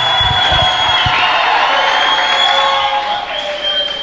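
A congregation cheering and shouting together in response, a dense mix of many voices that eases off near the end.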